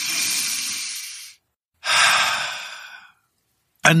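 A man takes a slow, deep breath as a demonstration: a long breath in lasting about a second and a half, a brief pause, then a long breath out that fades away.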